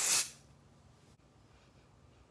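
A single short spray from a Salon Selectives aerosol hairspray can: a hiss that cuts off about a third of a second in.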